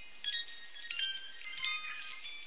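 High, bell-like chime tones opening a music track. Three clusters of several ringing notes sound about two-thirds of a second apart, with no bass, over a faint hiss.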